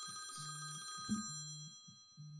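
Electronic phone tones on a call line: a high, many-toned ringing chime that cuts off about a second in and fades away, over a low tone that pulses roughly once a second.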